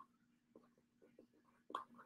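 Near silence: a low steady hum of room tone with faint small ticks and scratches of paper handling at a desk, and one sharper click near the end.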